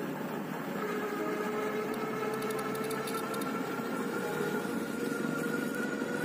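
Electric hub motors of a two-wheel-drive e-bike whining steadily under load on a climb, the whine rising slowly in pitch, over a haze of tyre and wind noise.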